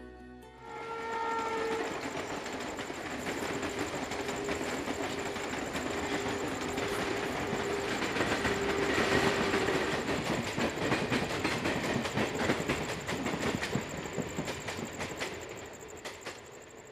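Electric commuter train passing close by, its wheels clattering over the rail joints. It is loudest about nine seconds in and fades near the end. A short horn-like tone sounds about a second in.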